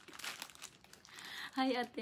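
Plastic instant-noodle packet crinkling as it is held and moved in the hands, with irregular small crackles.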